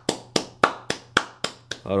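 A run of sharp taps or clicks in an even rhythm, about four a second, followed by a man's voice near the end.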